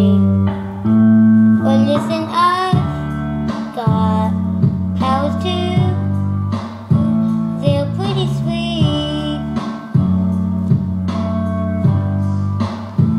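A boy singing a song over a strummed acoustic guitar accompaniment.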